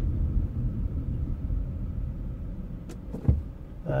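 Low, steady engine and road rumble heard inside a moving car's cabin, with a faint click and a short low thump a little after three seconds in.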